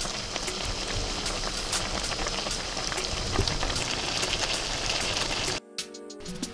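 Vegetables in a creamy sauce sizzling in a frying pan, a steady crackling hiss that cuts off suddenly near the end.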